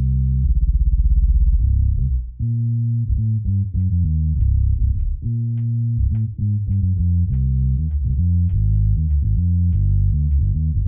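Sampled electric bass from the Native Instruments Session Bassist: Prime Bass virtual instrument, played from a keyboard: deep low notes, the first held with a fast fluttering wobble, then a run of separate notes at about two a second, each with a faint click of string attack.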